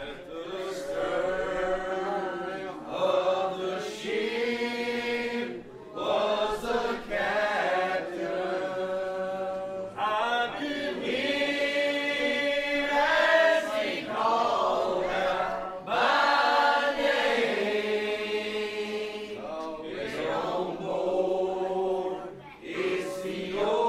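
Church congregation singing a hymn together in long, held phrases, with short breaks between lines.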